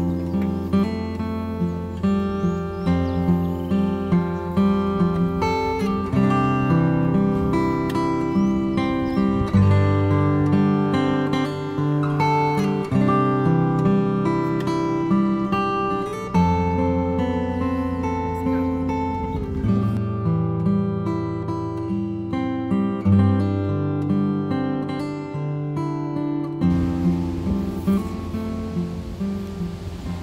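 Background music of strummed acoustic guitar playing a chord progression.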